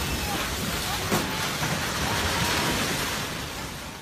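Steady roar of a multi-storey apartment building collapsing in an earthquake: rubble and debris crashing down, holding at one level for several seconds.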